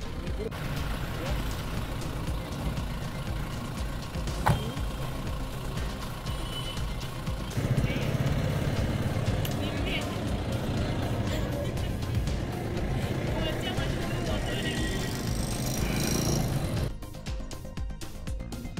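Outdoor roadside ambience of vehicle noise and people's voices, with background music under it. There is a sharp click about four and a half seconds in, the ambience grows louder around eight seconds in, and near the end it gives way to music alone.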